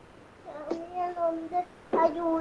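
A high young female voice making two long, drawn-out vowel sounds at a nearly steady pitch, the first about half a second in and a louder one near the end.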